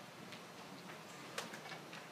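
Faint room ambience with a few light ticks and one sharper click about one and a half seconds in.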